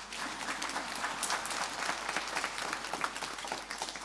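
Audience applauding: many hands clapping steadily together.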